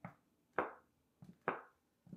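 A soft plastic Derma E Scalp Relief conditioner bottle squeezed by hand about four times, roughly half a second apart, each squeeze a short soft squish. This is the old packaging, nice and squishy and easy to squeeze.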